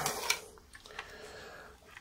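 A wad of crumpled tin foil crinkling in the hand near the start, then a single light click about a second in, over faint room tone.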